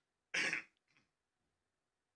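A man clears his throat once, briefly, about a third of a second in.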